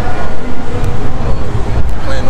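Loud, uneven low rumble with faint voices in the background.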